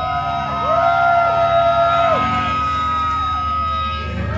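Sustained electric guitar feedback whose pitches bend up, hold and drop back down, several tones at once. It sits over a steady amplifier hum.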